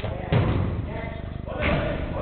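A football struck once with a thud about a third of a second in, among players' shouts.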